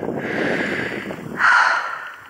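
A person breathing close to the microphone: two audible out-breaths, the second louder and shorter.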